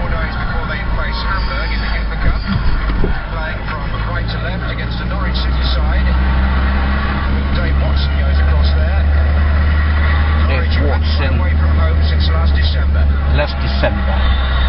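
Steady low drone of a car's engine and road noise heard from inside the cabin while driving, with indistinct voices over it.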